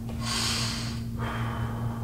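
A man's loud breath, about a second long, with no voice in it, followed by quieter room sound; a steady low electrical hum runs underneath.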